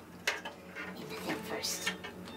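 Hard clear plastic turntable dust cover and its hinges clicking and knocking as they are handled, a few separate sharp clicks, with a brief rustle of packing paper near the end.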